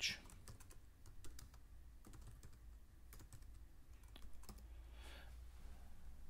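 Typing on a computer keyboard: a run of faint, irregularly spaced keystrokes.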